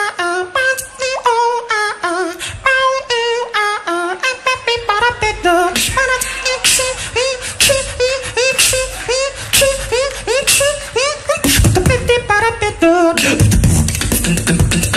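Human beatboxer performing into a handheld microphone: a run of short pitched vocal notes, many sliding upward, over sharp clicking mouth percussion. About eleven seconds in, deep bass sounds come in and the routine thickens into a heavy drop.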